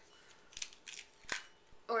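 Fingernails picking at the end of a duct tape roll: a few faint scratchy crackles and one sharp tick just past a second in.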